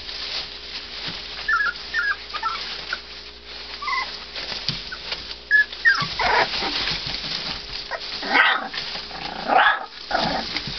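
Three-week-old American bulldog hybrid puppies whimpering and squealing: short high squeaks in the first few seconds, then louder cries about six, eight and a half and nine and a half seconds in.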